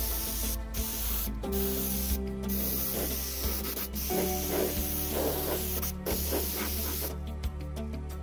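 Compressed-air hiss of an Iwata LPH-80 gravity-feed mini spray gun spraying acrylic paint in short stabbing passes, the hiss breaking off briefly several times as the trigger is let go and stopping about seven seconds in. Background music plays underneath.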